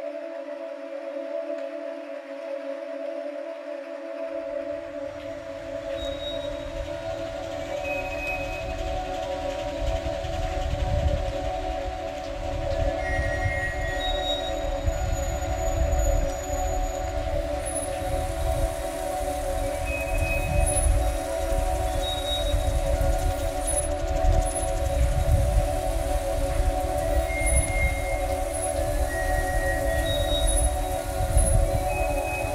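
Ambient drone music: steady low sustained tones, with a deep rumble that comes in about four seconds in and grows louder. Sparse short high tones ring out here and there over it.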